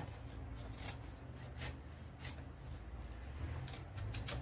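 Scissors cutting a paper sewing pattern: a few faint, separate snips as a piece is trimmed away to round off the point of the dart.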